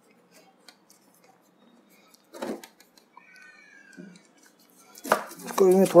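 Light clicks and a single knock of plastic and metal parts as an LED TV's backlight and frame assembly is handled and turned over, with a faint short squeak a little later. A man's voice starts near the end.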